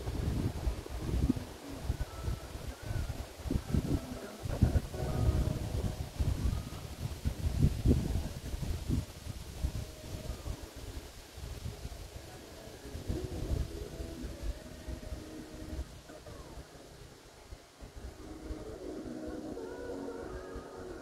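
Wind gusting against the microphone, an uneven low rumble that swells and drops repeatedly and eases off in the second half.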